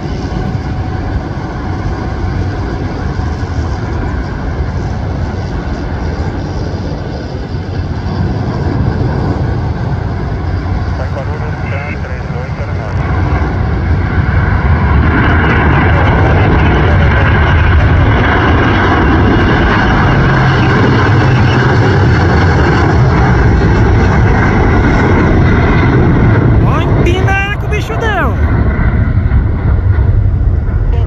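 Airbus A330-300 twin turbofan engines at takeoff thrust during the takeoff roll and climb-out, noisy and continuous. The sound grows louder about 13 seconds in as the jet nears and lifts off, then holds loud.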